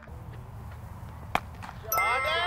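A single sharp crack of a cricket bat striking the ball, about a second and a half in, over a low steady background rumble.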